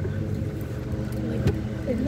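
Golf cart running as it rolls along, a steady low hum, with one sharp knock about a second and a half in.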